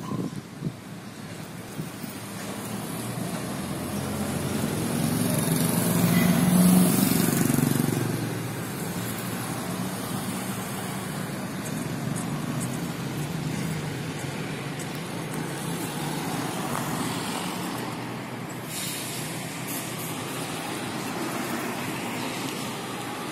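A heavy vehicle engine at a construction site, running over steady site noise and growing louder to a peak about seven seconds in, then easing back to a steady level.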